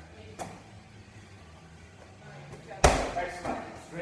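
A 20-pound medicine ball smacks the wall about half a second in. Near the three-second mark comes a much louder, heavy thud with a short echoing tail as the ball is dropped on the floor, ending the set of wall balls.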